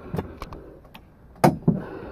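A few soft clicks and knocks of handling, the loudest about one and a half seconds in.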